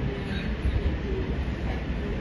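A steady low rumble of room noise, with faint distant voices.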